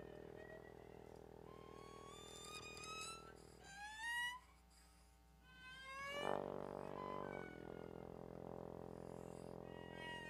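Freely improvised duet of trombone and bowed cello: long held tones and several upward-sliding pitches, thinning out near the middle before a louder entry about six seconds in.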